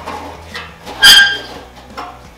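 A sharp metallic clank about a second in, ringing briefly, with lighter knocks around it: a cut-out steel rocker panel section being handled on a metal stand.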